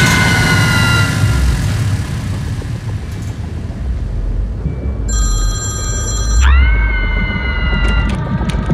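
Horror jump-scare sound design: a shrill screeching hit over a deep rumble, fading over the first couple of seconds. A high ringing tone comes in about five seconds in, and a second screeching hit lands about a second and a half later.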